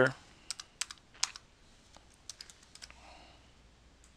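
Typing on a computer keyboard: a dozen or so irregular keystrokes as a word and a few letters are entered into a form.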